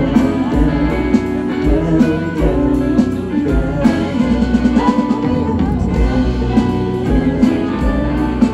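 Live rock band playing in concert, electric guitars over a drum kit beat, heard loud from within the audience.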